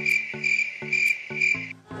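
A cricket chirping sound effect, a steady high trill that swells about twice a second and cuts off suddenly near the end, used as the comic 'crickets' gag. Light background music plays underneath it.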